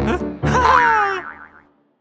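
Cartoon sound effect: a short rising glide, then a loud sound that falls in pitch and dies away as the background music breaks off.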